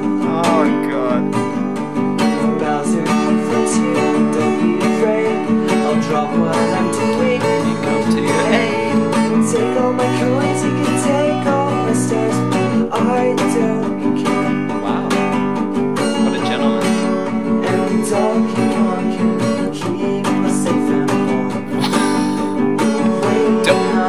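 Acoustic guitar strummed steadily in chords, with a young man singing a slow love song over it.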